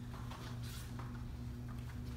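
Steady low hum of a quiet room with a few faint rustles and soft taps, as people kneel and set their hands down on exercise mats.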